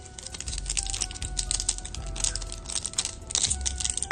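An Absolute Football trading-card foil pack crinkling and being torn open by hand: a dense run of crackles and clicks.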